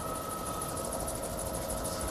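Helicopter in flight, heard from inside the cabin: a steady noise with a fast, even flutter and a faint steady whine.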